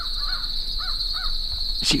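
A crow giving about four short caws over a steady high chorus of crickets.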